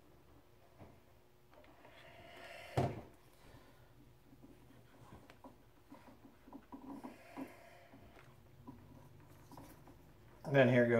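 Faint handling sounds of small wires and heat shrink tubing being worked by hand over a wooden board: light ticks and rustles, with one sharper knock about three seconds in.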